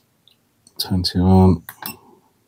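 A person's voice: one short wordless vocal sound, about a second long and falling in pitch, with a few sharp clicks just before and after it.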